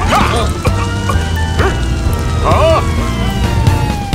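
Cartoon background music with a slow falling tone, broken by a few short yelping cries from cartoon characters.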